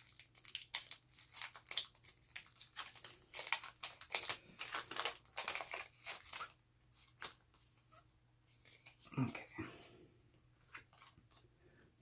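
Foil wrapper of a Pokémon TCG booster pack crinkling and tearing as it is slit open and the cards are pulled out: a run of short crackles that thins out after about seven seconds.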